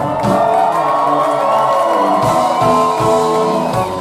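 Live band music: a bowed violin holding long notes over cello and a drum kit beating steadily.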